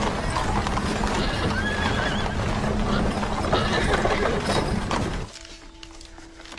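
Horses' hooves clopping on stone paving and horses neighing, with voices and music under them; the sound cuts off suddenly about five seconds in.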